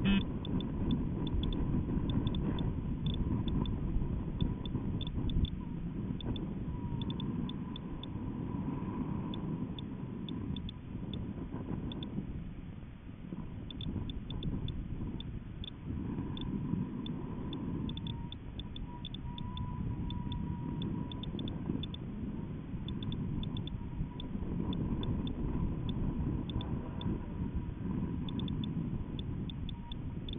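Low, gusty rumble of wind and buffeting on a balloon payload camera's microphone in flight, rising and falling in waves. A faint thin tone wavers in pitch now and then.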